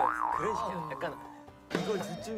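A cartoon-style wobbling 'boing' comedy sound effect over background music. It fades away about a second and a half in, and a voice starts again just before the end.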